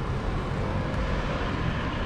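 Steady street noise heard from a moving bicycle: a low rumble of traffic and wind on the microphone, with a faint steady hum.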